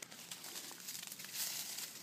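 Faint rustling and crinkling of dry pine needles and leaf litter being disturbed, with small scattered crackles.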